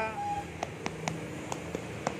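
A knife handle tapping the spiky rind of a ripe Montong durian: several light, sharp knocks beginning about half a second in. This is the hollow 'bug bug' sound from inside the fruit that marks the durian as ripe.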